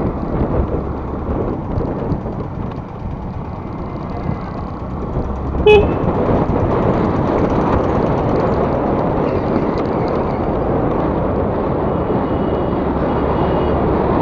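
Steady wind and road noise from a scooter ride, with one short horn beep about six seconds in, the loudest sound.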